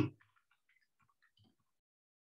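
Faint computer keyboard typing: a quick, irregular run of light key clicks that stops after about a second and a half.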